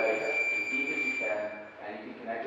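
A single long electronic beep, one steady high tone that stops about a second and a half in, over people talking in the background.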